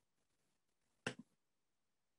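Near silence with one short, sharp click about a second in.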